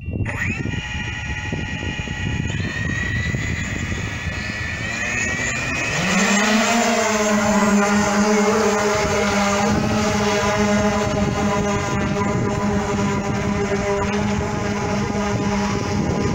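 Electric VTOL drone taking off: its lift motors and propellers start just after the opening and whine at several steady high pitches, rising a little as the drone lifts and climbs. About six seconds in, a deeper and louder propeller hum slides up in pitch, then holds steady.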